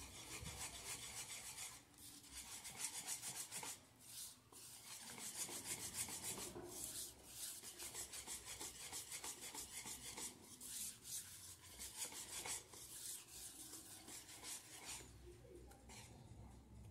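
Wire whisk beating thick cake batter in a bowl, its wires scraping and swishing against the bowl in quick, even strokes. There are short breaks about two and four seconds in, and the whisking stops shortly before the end.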